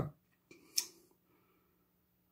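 A pause in talk: the tail of a spoken word, then one short, sharp click a little under a second in, against a quiet room.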